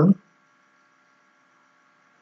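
The tail of a spoken word right at the start, then near silence with only a faint, steady background hum of several thin tones.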